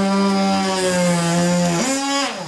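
Oscillating multi-tool with a half-moon drywall blade cutting into drywall: a loud, steady motor whine whose pitch steps up near the end before the tool stops.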